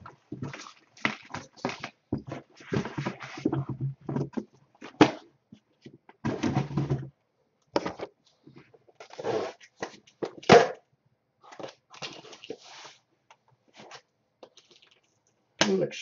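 A cardboard shipping box being opened and unpacked by hand: cardboard tearing and rustling in short bursts with pauses between.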